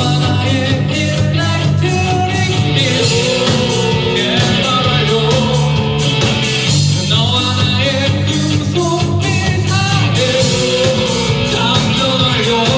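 A rock band playing live: a male lead vocal sung over electric bass, electric guitar, keyboard and a drum kit keeping a steady beat.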